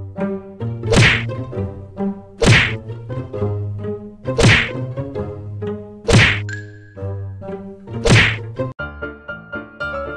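Five loud whacks, one every one and a half to two seconds, as a cat's paw slaps at a hand over a stack of banknotes, over a steady humming drone.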